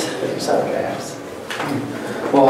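Quiet talking at a meeting table, with a brief knock or scrape of furniture about one and a half seconds in.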